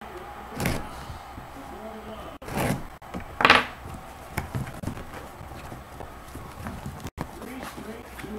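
Sealed cardboard box being cut open with diagonal cutters: packing tape snipped and cardboard rustling and scraping in several short bursts, the loudest about three and a half seconds in.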